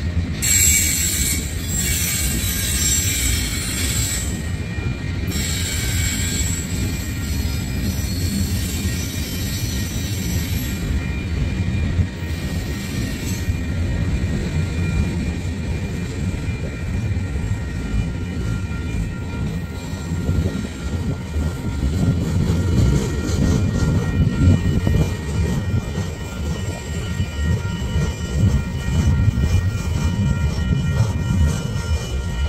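Freight train of loaded flatcars rolling past: a steady rumble of steel wheels on the rails, with faint high-pitched squealing tones over it, strongest in the first few seconds.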